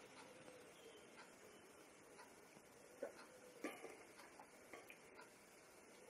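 Near silence with a few faint short clicks about halfway through: a man sipping and swallowing beer from a pint glass.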